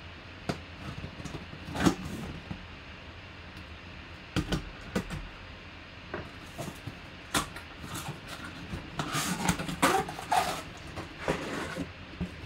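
Cardboard box being cut open and unpacked: a knife slitting the packing tape, then cardboard flaps and a plastic case rustling, scraping and knocking in irregular bursts, busiest about nine to ten seconds in.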